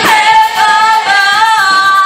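A group of women singing together, holding long notes that slide from one pitch to the next.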